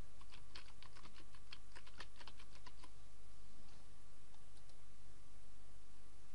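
Typing on a computer keyboard, quick keystrokes that stop about three seconds in, followed later by a couple of faint clicks, over a low steady hum.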